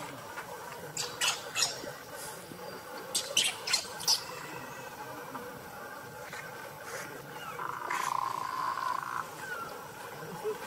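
A baby macaque giving a run of short, sharp, high squeaks in the first four seconds. A steadier call is heard about eight seconds in.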